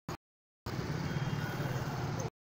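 Abrupt dropout to total silence for the first half-second or so, broken by a brief blip, then a steady low background rumble cuts back in.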